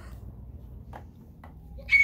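Low rumble of a phone being handled and carried, with a few faint knocks of steps on carpeted stairs. Just before the end, a sudden short high-pitched cry as someone is startled.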